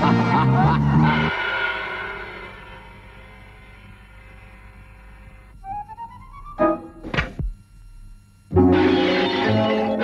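Cartoon soundtrack: music fades out into a long dying chord. A quick rising run of short notes follows, then two sharp comic hits, the second with a steep falling swoop. Near the end the music comes back in loud.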